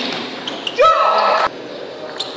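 A loud shouted cry lasting under a second, rising in pitch at its onset and then held, with a few light clicks of a table tennis ball bouncing just before it.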